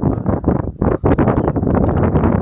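Wind buffeting the microphone: a loud, gusting noise that briefly dips about a second in.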